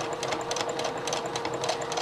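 Sewing machine running steadily, sewing a straight stitch: an even motor hum under rapid, regular ticking of the needle.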